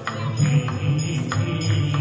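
Live devotional chant music: a man singing through a microphone and PA, with several sharp percussion strikes over a continuous low accompaniment.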